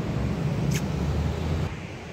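Steady low rumble of a running vehicle engine, with a single sharp click about three-quarters of a second in; the rumble stops abruptly near the end.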